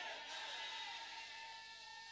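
A faint held chord of a few steady tones that slowly fades, with the hall's echo of the last shouted words dying away at the start.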